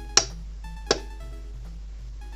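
Two sharp clicks about three-quarters of a second apart from the push button of a UV-LED resin curing lamp being pressed to start its 60-second timer, over background music.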